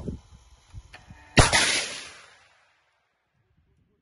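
Launch of a guided anti-tank missile: one sharp, loud blast about a second and a half in, dying away over about a second.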